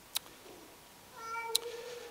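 A faint click, then about a second in a short, steady, high-pitched squeak with overtones, lasting under a second, with a second click partway through.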